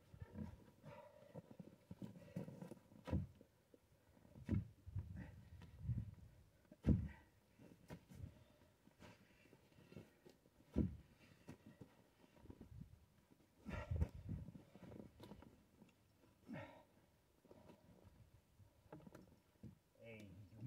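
A chainsaw bar pinched fast in a birch log, the saw not running, while a long lever pries at the log: scattered knocks, scrapes and creaks of wood and tool, with a sharper knock every few seconds.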